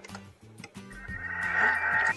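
Background music with a few light clicks from the Thermomix's selector dial being turned. In the last second the Thermomix motor starts blending, its noise swelling as it picks up speed.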